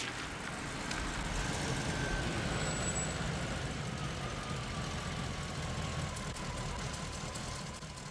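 Police patrol car driving up and slowing alongside: engine and tyre noise swell over the first few seconds, then ease, with a faint whine slowly falling in pitch.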